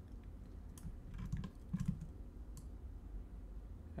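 A few faint, scattered clicks from a computer keyboard and mouse being worked, over a low steady hum.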